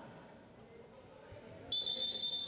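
Quiet gym ambience with a low murmur, then near the end a loud, long, steady blast of a referee's whistle begins and carries on.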